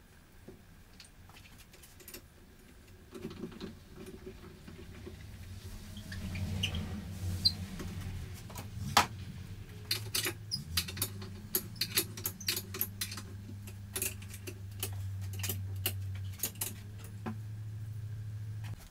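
Small objects handled at a workbench: scattered clicks, taps and light clatter, busier from about six seconds in. A low steady hum sets in around the same time beneath them.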